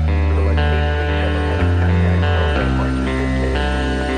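Instrumental post-rock: layered electric guitars with ringing, echoing notes over held bass notes that shift pitch about one and a half and two and a half seconds in.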